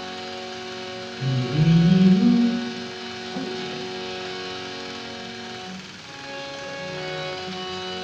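Hand-pumped harmonium playing sustained reed chords, with a louder, low melodic phrase rising about a second in.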